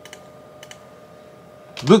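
A few light computer keyboard keystrokes as a word is typed in: one click just after the start and two close together a little before the middle.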